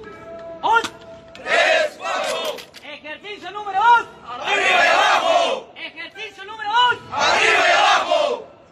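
A group of army recruits shouting together in unison during a drill exercise: three long, loud group shouts a few seconds apart, with a single man's shorter calls in between.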